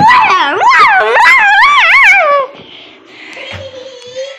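A loud, high, wavering howl-like cry that slides up and down in pitch for about two and a half seconds, then stops, leaving faint quieter sounds.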